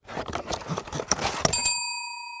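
Cardboard box lid pulled open and crumpled kraft packing paper rustling. About one and a half seconds in, a single bright bell ding from a subscribe-button sound effect starts and rings on, slowly fading.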